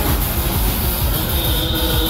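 Fairground Jumper thrill ride running, its machinery noise mixed with loud music from the ride's sound system.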